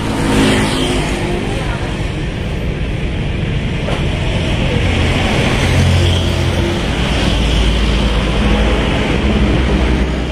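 Road traffic: cars and a motorbike passing on a road, a steady engine and tyre noise with a deeper rumble swelling around the middle.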